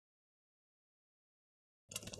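Dead silence: the sound track cuts out completely, with faint sound returning just at the end.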